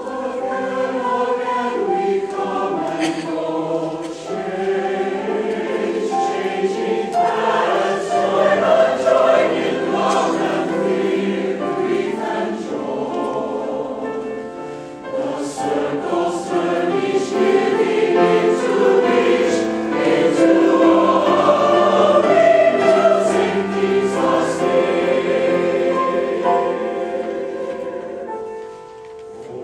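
Large mixed choir of men's and women's voices singing in harmony, with piano accompaniment; the choir comes in at the start after a piano passage.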